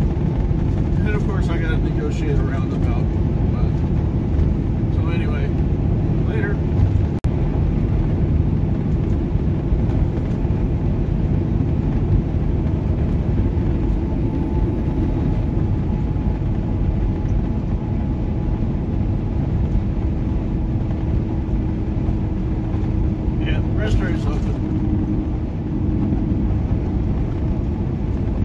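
Semi-truck cab interior at highway cruising speed: the diesel engine and tyre and road noise make a steady low drone with a few level engine tones.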